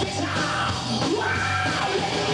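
Live rock band playing: electric guitars and bass over a steady drum beat, with a high line that bends up and down in pitch through the middle.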